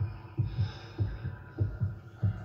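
Low, heartbeat-like thumping in a film soundtrack: soft double beats, a pair a bit less than twice a second, used as suspense under a stalking scene.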